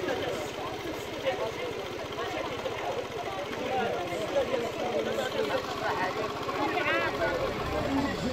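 Indistinct chatter of several people talking at once in the street, over a low, steady engine hum.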